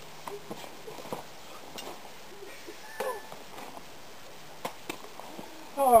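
Scattered sharp clicks and scrapes of steel ice-axe picks and crampon points working on rock during a mixed climb, with a few short grunts of effort. A loud cry of "Oh" breaks out right at the end as the climber starts to fall.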